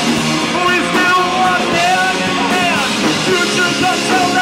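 Live rock band playing a song: electric guitars, bass guitar and drum kit, loud and without a break.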